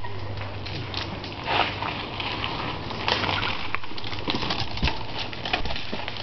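Knobby mountain-bike tire spinning against a log, rubber scraping and grinding into the wood with an uneven patter of small ticks.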